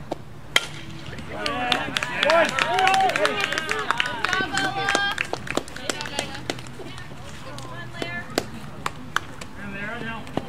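A softball bat cracks sharply against the ball about half a second in. Several high voices then shout and cheer for a few seconds, with a few lighter clicks and knocks later on.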